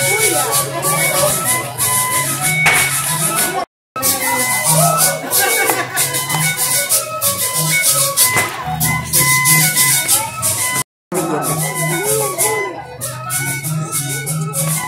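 Traditional Andean festival music with rattles shaking in a steady rhythm over a melody, voices mixed in. The sound cuts out completely for a moment twice, about four seconds in and again about eleven seconds in.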